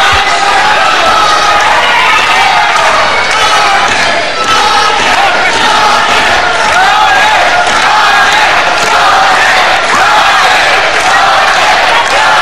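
Wrestling arena crowd, many voices shouting and calling out at once in a loud, steady din.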